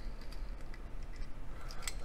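A few light clicks and handling noise from a die-cast Hot Wheels Porsche 944 toy car being turned over in the fingers, the sharpest clicks near the end, over a low steady hum.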